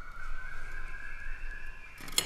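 Two steady, high held notes of a background music drone, sustained without a break; the lower note steps up slightly near the start.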